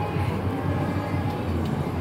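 Steady low rumble and din of an indoor amusement park, with faint background music under it.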